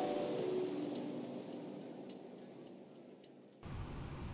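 Short logo jingle: a held chord ringing and fading away over about three seconds, with light high ticks, then cut off abruptly to room noise near the end.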